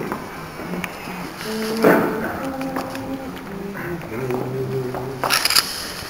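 Male singers quietly sounding a few held notes at different pitches, one after another: the starting pitches given out before an a cappella Orthodox chant. There are a couple of brief rustles, the louder one near the end.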